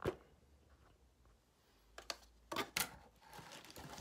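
Handling noises: a sharp knock at the start, a few quick clicks and taps about two seconds in, then a rustle building near the end as plastic-wrapped gear and packaging are moved on the desk.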